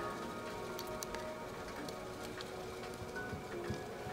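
Soft background music with long held notes, under faint clicks and rustle of plastic LEGO Technic pieces being handled and pressed together.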